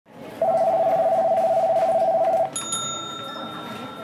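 An electronic telephone ringing: a steady warbling trill of two tones for about two seconds. Then a single high chime rings out.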